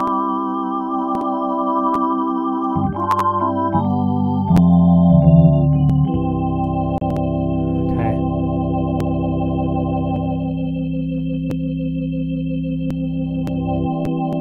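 Casio Privia Pro PX-5S digital stage piano sounding its drawbar-organ preset, with the vibrato/chorus effect on. It plays held organ chords over bass notes, with chord changes about 3, 4½ and 6 seconds in, then sustains.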